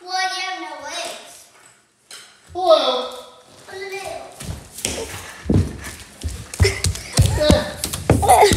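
A child's high voice calls out twice in the first few seconds, then a run of irregular thumps and knocks from a handheld phone being jostled and bumped close to the microphone.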